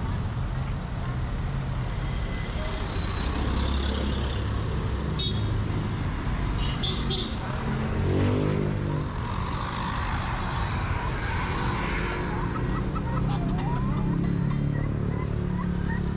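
Street traffic: motor vehicles running and passing on a road, a steady rumble with an engine revving up about eight seconds in.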